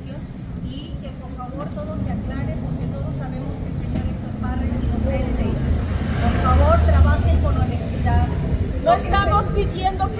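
A heavy road vehicle passing on the street, its low engine rumble building steadily and loudest about seven seconds in. Quiet talking runs underneath, growing clearer near the end.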